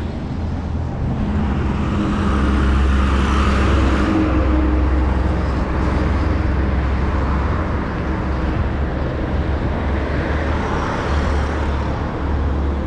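Road traffic on a busy road: a steady rumble of engines and tyres, with a vehicle passing loudest a few seconds in and another coming by near the end.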